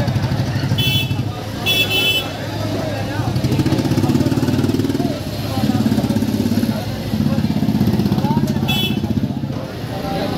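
JCB backhoe loader's diesel engine running and revving in steps as the arm works, over crowd chatter. Three short horn beeps, one about a second in, one near two seconds and one near the end.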